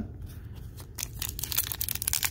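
Foil trading-card pack being torn open by hand: crackly tearing and crinkling of the wrapper, getting busier about a second in.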